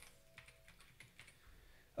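Faint computer keyboard typing: a few soft, scattered keystrokes.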